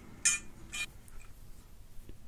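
Two short metallic clinks about half a second apart, from steel angle iron being handled and knocking against metal on the workbench.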